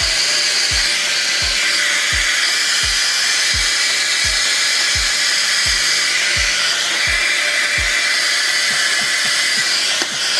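Handheld hair dryer blowing steadily, with background music carrying a steady low beat.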